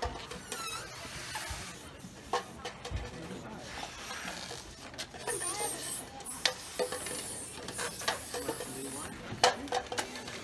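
Plastic party cups clacking and knocking on a table as players lift and set them down with balloons, mixed with short hisses of air from the balloons. People chat in the background.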